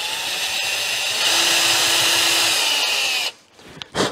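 Cordless drill boring into the broken aluminium thread of a mirror mount on a motorcycle's front brake fluid reservoir. It grows louder about a second in and stops suddenly a little after three seconds, followed by a sharp click near the end.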